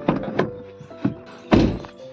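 Car door being opened and shut: a few sharp clicks and knocks from the handle and latch, then the door closing with a heavy thud about one and a half seconds in, the loudest sound here.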